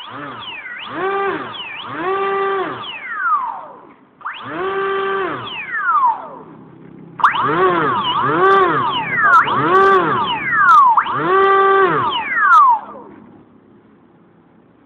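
Small electric model-aircraft motor spinning up and back down repeatedly, its whine rising, holding briefly and falling about six times.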